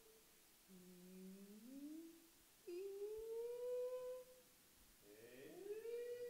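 A patient's voice phonating sustained tones during laryngeal endoscopy, with no words. About a second in, a low tone glides upward. Just before the midpoint a higher tone is held and rises slightly for under two seconds. Near the end another upward glide reaches a held high note. The vocal folds close with a posterior glottic gap (hiatus posterior).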